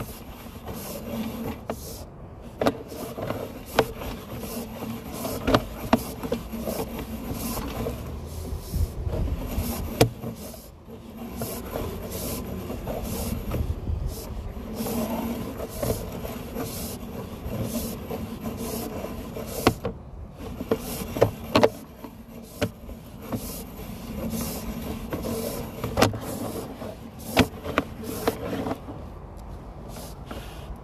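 Sewer inspection camera's push cable being pulled back out of the line and fed onto its reel: a steady rubbing rumble with a faint hum and frequent sharp clicks and knocks.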